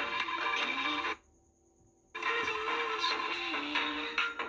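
Pop remix music playing through a small portable radio's speaker, received from a homemade FM transmitter fed by a phone. The sound is thin, with little treble. It cuts out suddenly about a second in and comes back a second later.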